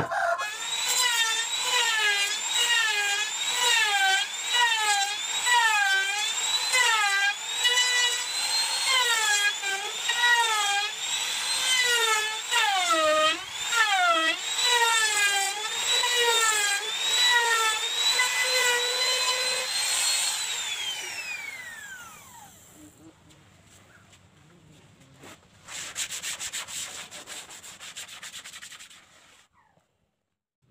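Handheld electric trim router cutting along the edge of a wooden tabletop. Its high whine dips and recovers over and over as the bit bites into the wood. About twenty seconds in it is switched off and winds down with a falling whine, and a short burst of rough scraping noise comes near the end.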